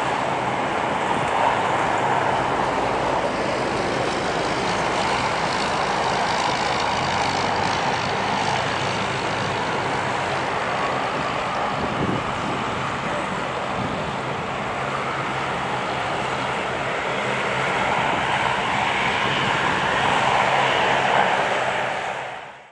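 Steady jet aircraft noise at an airport: a continuous rushing sound with a faint low hum underneath, holding at an even level.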